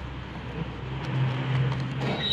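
A small blade slitting packing tape along the seam of a cardboard box, over a steady low motor hum that grows louder about a second in.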